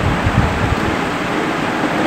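Steady, fairly loud hiss of background noise, with a few soft low bumps about half a second in.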